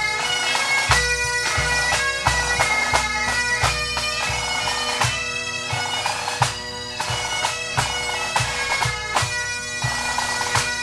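A pipe band playing: Great Highland bagpipes sounding a melody over steady drones, with drums beating a regular pulse underneath.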